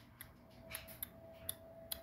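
Faint handling noises: about five light, sharp clicks and taps of grocery items being moved, over a faint steady hum.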